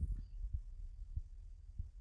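Low, dull thuds, a few of them spaced irregularly, over a faint low rumble, with no speech.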